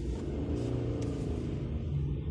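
Car engine and road rumble heard from inside a moving car, the engine note rising a little about half a second in as the car pulls forward.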